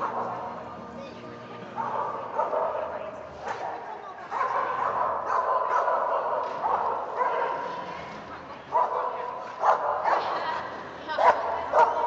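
Dogs barking at an agility trial, with several sharp barks in the second half, the loudest near the end, over people talking in a large echoing indoor hall.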